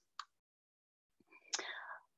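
A pause in speech: near silence with a faint click just after the start, then a short, soft intake of breath near the end.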